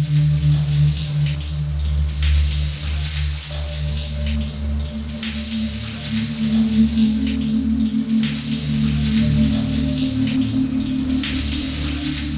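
Shower running, a steady hiss of spraying water with irregular splashes as it hits a person and tiled surfaces, over a low sustained music score.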